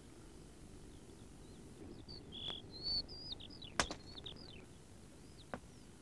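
Faint birdsong: short high chirps and whistled notes. There is a sharp click a little past the middle, the loudest sound here, and a softer one later.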